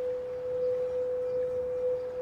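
Frosted quartz crystal singing bowl sung by circling a wand around its rim, giving one steady, pure humming tone.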